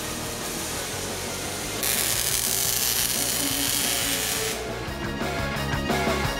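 Background music, with a loud harsh hiss of metalworking on steel chassis tubing for about three seconds in the middle. A steady beat comes in near the end.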